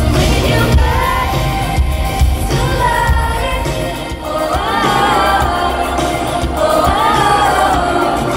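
Live pop music: a female lead singer's amplified vocal, holding and bending sung notes, over a full band with drums and heavy bass, heard loud from within the audience.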